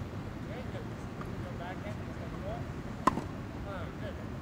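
A tennis ball struck by a racket once, a sharp pop about three seconds in, over faint distant voices and steady background noise.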